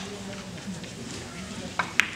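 Carom billiard balls rolling on the cloth after a three-cushion shot, with two sharp ball clicks a fraction of a second apart near the end. Voices murmur in the hall behind.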